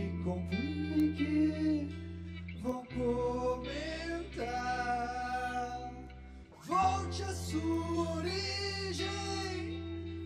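A live rock band plays, with sung vocals over electric guitars and a held low bass note. The music drops briefly about six and a half seconds in, then comes back.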